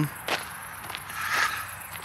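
Footsteps of a person walking, a few soft steps.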